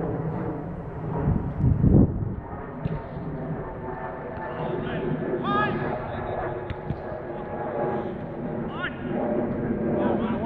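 Distant, unintelligible shouts and calls of footballers across an outdoor pitch. About two seconds in, a loud, deep rumble stands out above the voices.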